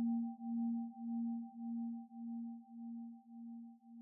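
A single low bell note ringing out and dying away, its level pulsing in a slow, even wobble as it fades.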